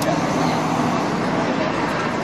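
Steady city street traffic noise, a constant roar of passing vehicles with a low hum, with faint voices mixed in.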